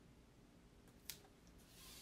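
Near silence with one small click about a second in, then faint rubbing near the end as hands press and smooth an adhesive stencil onto a board.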